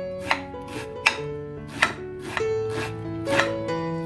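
Kitchen knife chopping an onion directly on a plate: a series of irregular sharp clicks, about six, as the blade cuts through and strikes the plate. Soft background music with held notes plays underneath.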